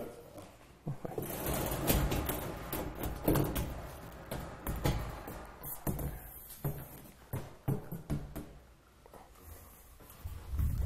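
Stainless-steel side panel of a food-service trolley being unhooked by hand and lifted off, with a string of metal knocks and clanks spread over several seconds and a quieter spell near the end.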